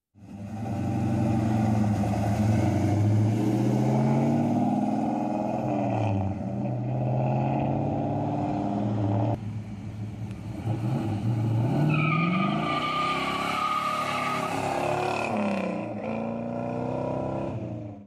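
1966 Plymouth Belvedere Satellite's V8 engine revving and accelerating, its pitch climbing and dropping through the gears. After a cut about halfway through, the car pulls away hard with a high squeal for a few seconds.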